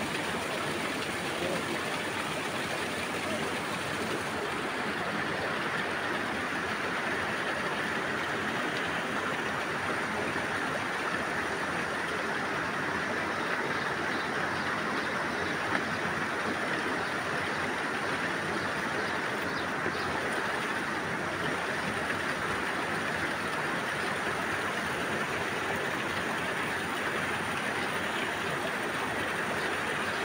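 Steady rush of flowing water in a rocky stream bed, even and unbroken throughout.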